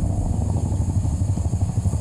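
Helicopter running close by: a loud, steady low rumble with a rapid pulsing beat from the rotor.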